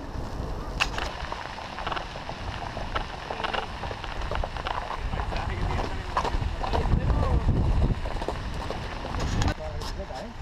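Mountain bike riding on a dirt track, with wind rumble on the helmet camera and the bike's rattling clicks, and the hooves of horses clopping as riders on horseback are passed partway through.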